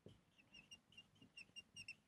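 Whiteboard marker squeaking faintly on the board as a word is written: a quick run of short, high squeaks.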